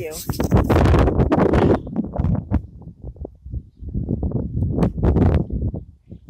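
Wind buffeting a phone's microphone in gusts: a heavy, uneven rumble, strongest over the first couple of seconds and again near the end.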